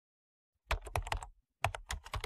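Computer keyboard typing: two short bursts of quick key clicks, the first starting under a second in and the second near the end.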